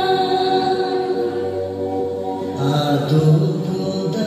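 Chant-like group singing in long held notes, accompanying a line dance; a lower voice sings a phrase about two-thirds of the way through.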